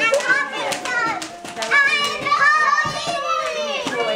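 Young children squealing and chattering excitedly at play, with several sharp pops of bubble wrap breaking in among the voices, the strongest about three seconds in.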